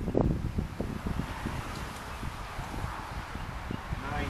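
Wind gusting on the microphone, with leaves rustling in the tree overhead; a stronger gust comes just after the start.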